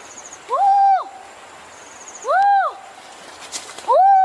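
Repeated loud hooting calls, each a single note that rises and falls over about half a second, coming roughly every one and a half seconds, with faint quick high chirps in between.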